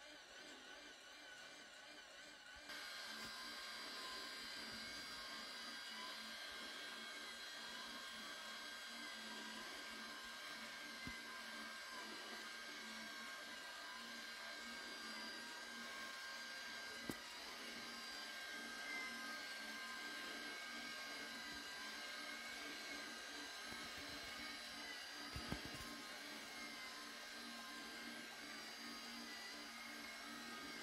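A faint, steady, high whine over a low hum, like a small machine running, switching on about three seconds in, with a couple of small clicks later on.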